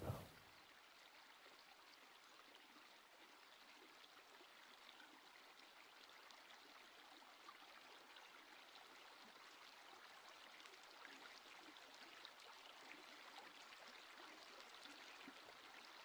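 Near silence: a faint, steady hiss like distant running water, growing slightly louder in the second half.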